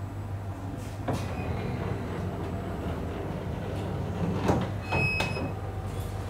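Espresso Book Machine running: a steady low hum, with mechanical clunks about a second in and again near the end, and a short high squeak just after five seconds as its mechanisms move the book block.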